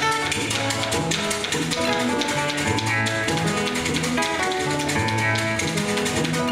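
Acoustic guitar played fingerstyle: quick runs of plucked notes over a low bass note that comes back about once a second.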